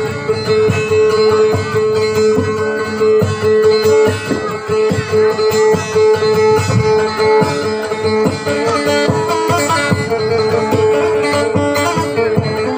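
Acoustic guitar played by plucking a repeating dayunday-style melody over a steady high drone note.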